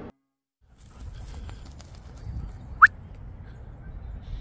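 Open-air ambience with a low, uneven rumble, broken by one short, sharp rising squeak near the middle.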